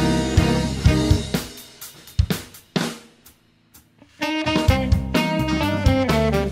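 A live band plays an instrumental groove on drum kit, keyboard and electric guitar. About a second in, the band drops out into a break with a few scattered drum hits and a moment of near silence. It comes back in together after about four seconds.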